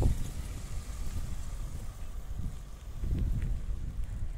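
Car pulling away with a low engine and tyre rumble, mixed with wind rumble on the microphone.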